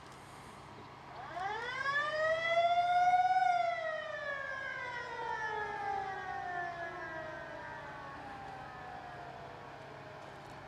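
Motor-driven warning siren winding up in pitch for about two seconds, then slowly winding down as it coasts, fading toward the end.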